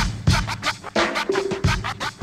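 Hip hop beat with turntable scratching over it and no rapping.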